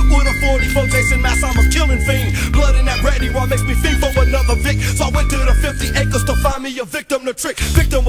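Hip hop track with rapping over a heavy bass beat. About six and a half seconds in, the bass drops out for about a second, then the full beat comes back.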